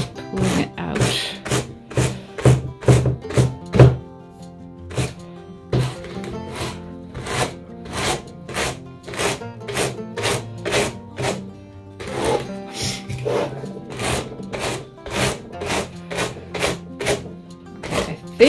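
Background music with a run of short, brisk scraping strokes, about three a second: a wooden packing brush pressing wool fibres into the wire carding cloth of a blending board. The strokes are loudest in the first few seconds.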